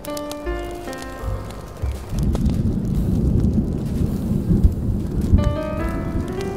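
Smooth jazz notes over steady rain; about two seconds in a long, deep rumble of thunder rolls in and becomes the loudest sound. Jazz notes return near the end over the rumble.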